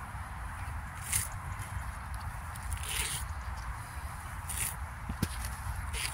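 Grass being pulled and torn up from the turf: four short rustling tears, about a second and a half apart, over a steady low rumble.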